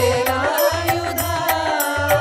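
Tamil devotional Murugan bhajan music: an ornamented, gliding melody line held over a steady drum beat.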